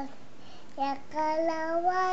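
A young child singing, after a brief pause, in long held, wavering notes that start about three-quarters of a second in.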